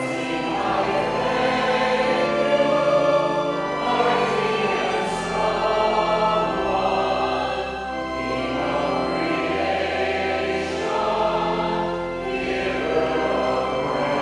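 Church choir singing a slow hymn over sustained instrumental accompaniment, the music for the preparation of the gifts at a Catholic Mass.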